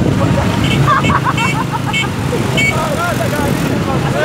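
Motorcycle engine running steadily as the bike rides along, with men's voices talking over it and a few short high-pitched beeps in the first three seconds.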